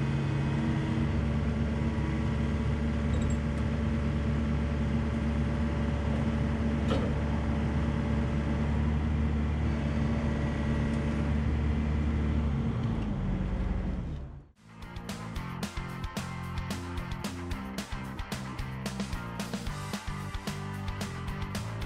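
Excavator's diesel engine running at a steady speed, dropping slightly in pitch shortly before it cuts off abruptly about fourteen seconds in. Music with a quick beat follows.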